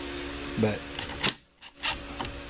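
Old Ryobi impact driver briefly run on the small Phillips screws of a Suzuki DR650 carburetor's top cap: two short rasping bursts about half a second apart. A steady fan hum runs underneath.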